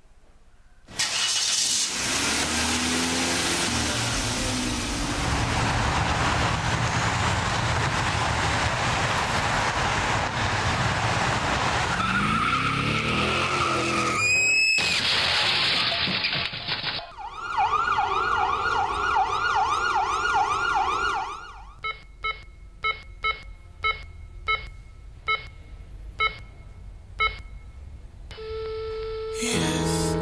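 Car-crash sound-effect sequence played over a rink's sound system: a car driving, a rising tyre screech, then a crash about halfway through. An emergency siren then wails for a few seconds, followed by a run of short electronic beeps, about two a second.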